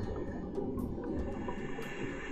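Underwater noise picked up by a diver's camera housing: a low, muddy rumble with scattered faint clicks, slowly fading down.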